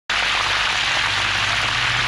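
Hot cooking oil sizzling steadily around a raw whole chicken being deep-fried.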